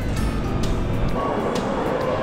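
Background music with a light beat over a steady low rumble of road and wind noise from riding along a city street.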